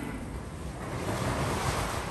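Outdoor street ambience with a rushing noise that swells a second in and stays strong to near the end.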